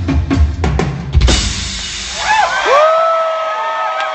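Rock drum kit and congas played together in a fast drum solo, ending on a final accented hit about a second in. The crowd then cheers, with a long held whoop rising above it.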